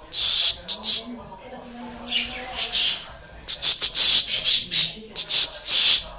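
Budgerigars chattering and screeching in repeated loud bursts, with a clear wavering whistle between about two and three seconds in.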